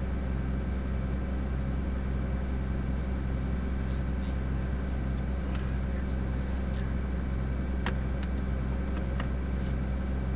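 An engine running steadily with a slow, even throb. In the second half, a handful of sharp metal clinks from a hand tool working on the corn head's chain parts.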